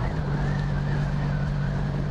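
1983 Honda V65 Magna's 1100 cc V4 engine running at a steady cruise under way, holding an even pitch, with wind and road noise.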